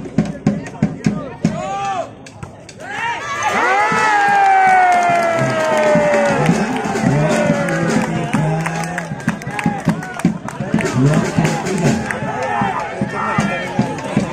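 Spectators shouting and cheering at a volleyball match, with one loud, long call that slides down in pitch for about four seconds in the middle.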